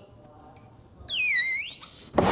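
A brief, high, wavering whistle-like cartoon sound effect, swooping down and back up, starting about a second in and lasting under a second, after a moment of near quiet.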